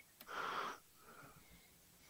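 A short breath into a microphone about a quarter second in, then a fainter one, with near silence for the rest.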